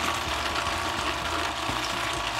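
Small food processor's motor running steadily, its blade spinning through a thick paste.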